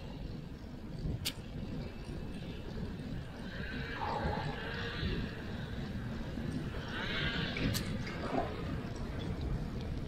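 Steady low rumble of wind on the microphone and tyres rolling on pavement from a moving bicycle, with two sharp clicks, one about a second in and one near the end.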